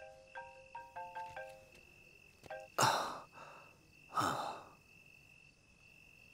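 Mobile phone ringtone, a quick run of short melodic notes that stops about two seconds in. Then come two heavy breaths about a second and a half apart, with crickets trilling steadily behind.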